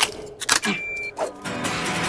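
Animated-film soundtrack: a few short, sudden whooshing sound effects and a brief high beep, then music with held notes from about a second and a half in.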